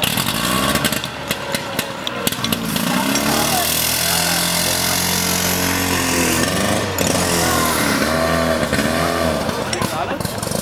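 A small petrol engine, most likely the team's portable fire pump, running hard, steady through the middle and rising and falling in pitch before and after, over a steady high hiss.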